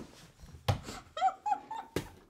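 Stifled, near-silent laughter from two women doubled over: a few short high squeaks of held-in laughter about halfway through, with a sharp tap just before them. Quiet overall.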